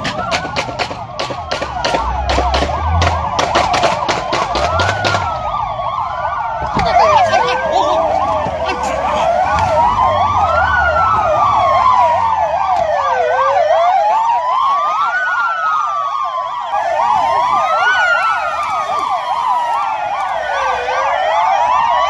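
Several police car sirens sounding at once, slow rising-and-falling wails overlapping fast yelps. For the first five seconds, and again briefly a couple of seconds later, a rapid run of sharp cracks about three a second cuts through the sirens.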